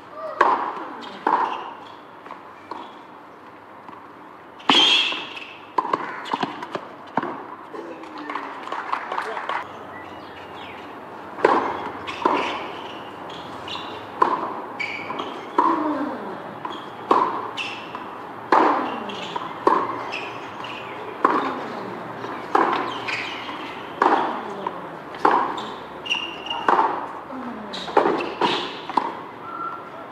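Tennis balls struck by racquets in rallies on a hard court: a sharp hit every second or so, with ball bounces in between and short pauses between points.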